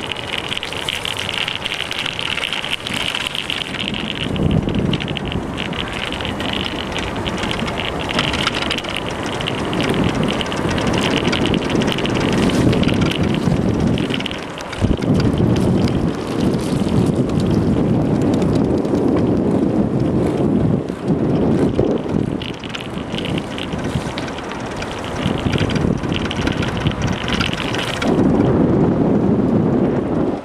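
Gusting wind noise on a bicycle-mounted camera's microphone, over the rumble of the bike's tyres rolling on the path and road. The noise swells and dips unevenly throughout.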